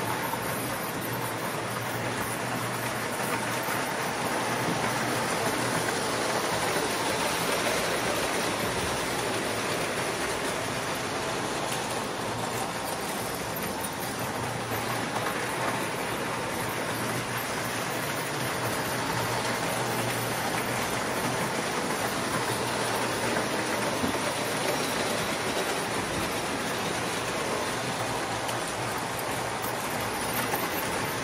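Toy model trains running on three-rail tinplate track: a steady rumble of wheels on the rails, with a low steady hum underneath.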